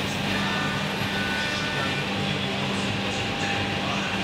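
Steady drone of woodworking machinery: a panel beam saw and its dust extraction running, with a constant low hum underneath.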